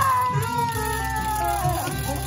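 Saxophone playing one long held note that sags slowly downward in pitch and falls off near the end, over a backing track with a steady bass line.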